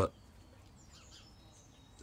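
A man's voice says one short word at the start, then near silence: faint background noise only.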